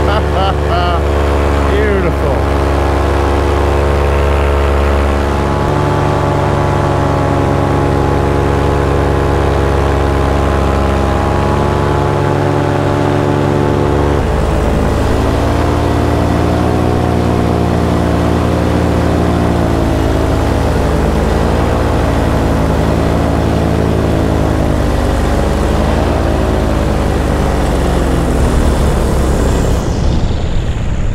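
Paramotor's two-stroke engine and propeller running steadily in flight, heard close up from the pilot's seat. About halfway through the pitch drops and begins to rise and fall as the throttle is eased back and worked.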